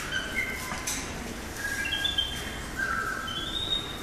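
Caged birds chirping in short, high whistles at several pitches, some notes stepping upward, over a low background hum.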